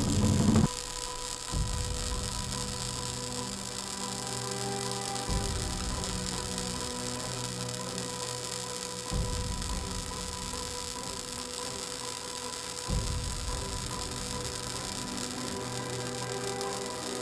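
Low droning end-screen background music: a steady hum-like drone with a soft low pulse that swells about every four seconds, after louder score cuts off just under a second in.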